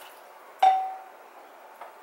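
A single sharp clink about half a second in, with a short ringing tone that dies away within half a second: a ladle knocking against a porcelain soup bowl while soup is being served. A faint tick follows near the end.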